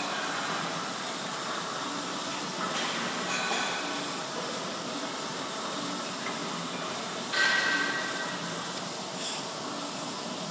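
Steady hiss of gym room noise, with one sharp knock about seven seconds in that rings briefly.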